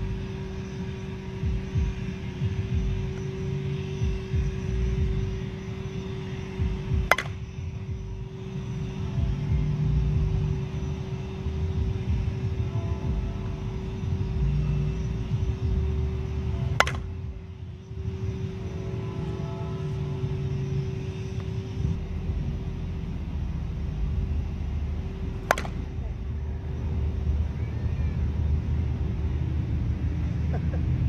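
A composite slowpitch softball bat, a Miken Freak Platinum PT12, strikes pitched softballs three times, about nine seconds apart, each hit a single sharp crack. A steady low rumble and a constant low hum run underneath.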